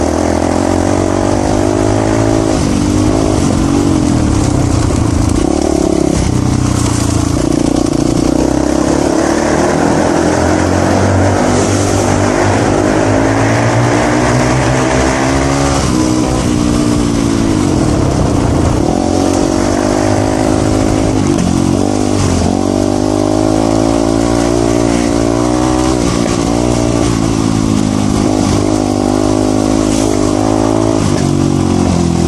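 Voge 300 Rally's single-cylinder engine running under way on a gravel track, its pitch rising and falling over and over as the throttle opens and closes and gears change.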